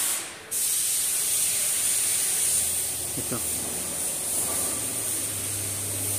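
Steady hiss with a faint low hum; it drops out briefly just after the start.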